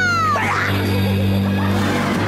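Added comedy sound effect of a cat's yowl sliding down in pitch, over steady background music, then a brief rushing noise about half a second in.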